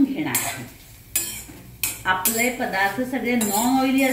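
Steel spoon scraping and clinking against a metal kadhai while ambadi flowers, chillies and garlic are stir-fried, with a few sharp clinks in the first two seconds. A wavering pitched sound runs underneath in the second half.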